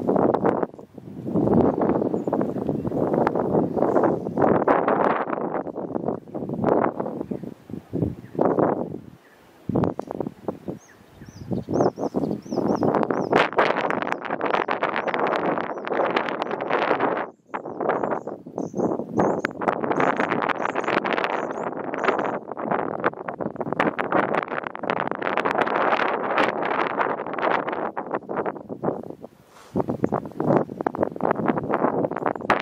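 Wind gusting over the microphone in loud, uneven buffets with short lulls. A bird's high chirps come faintly in short runs through the middle.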